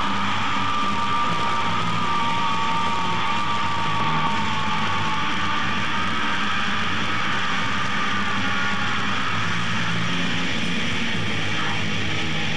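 A death metal band playing live, with distorted electric guitars, bass and drums, loud and dense, heard from the crowd through a camcorder's microphone. A held high tone rings over the band, drifts slightly lower, and fades out about three quarters of the way through.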